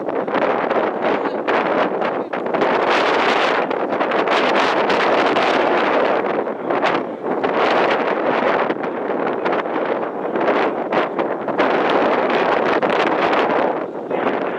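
Wind buffeting the microphone: a loud, gusting rush that swells and dips over several seconds.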